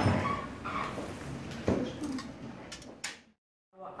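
Faint voices and room noise with a sharp knock and a few light clicks; the sound drops to dead silence for about half a second near the end.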